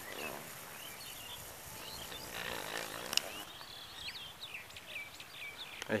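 Birds chirping faintly over a light outdoor hiss, with a single sharp click about halfway through.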